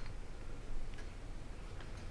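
A few faint, light clicks, roughly one a second, over a low steady hum in a quiet room.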